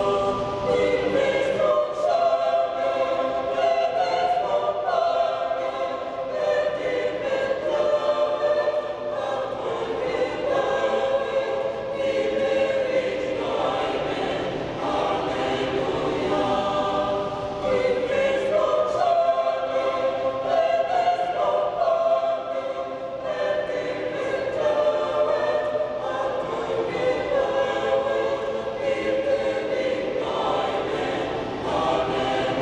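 Mixed choir of men and women singing a sacred part-song in several voices, phrase after phrase with brief breaks between them, in the echoing space of a cathedral.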